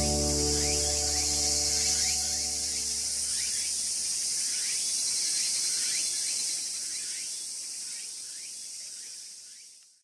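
Background music with held low notes fades out over the first few seconds. It leaves a steady high insect drone with short rising chirps repeating about twice a second, and the whole sound fades out at the very end.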